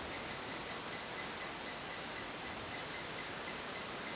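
Steady outdoor ambience: an even background hiss with faint high insect chirps near the start.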